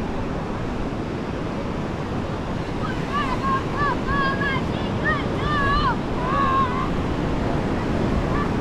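Ocean surf washing onto a sandy beach with wind buffeting the microphone, a steady rushing noise. In the middle a few high-pitched voices call out over it, rising and falling.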